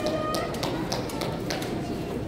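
Shoes tapping on a wooden stage floor: about five sharp, irregular taps in two seconds, with faint voices underneath.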